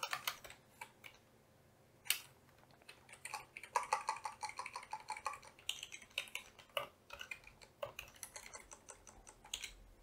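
Computer keyboard typing: quick irregular runs of keystrokes after a sparse start with a pause of a second or so.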